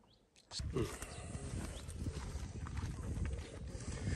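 Footsteps of several people walking over stones and rubble, irregular crunching and knocking, with wind rumbling on the microphone; it starts about half a second in after a brief silence.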